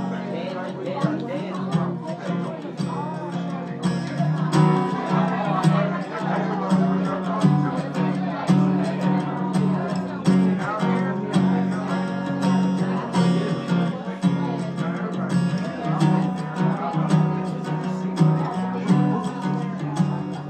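Solo acoustic guitar strummed in a steady rhythm, playing the instrumental introduction to a slow song before the singing starts; it gets a little louder about four seconds in.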